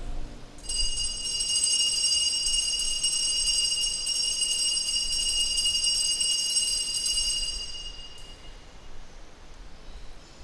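Altar bells rung steadily for the elevation of the host at the consecration, a bright high ringing that starts about half a second in and fades out about eight seconds in.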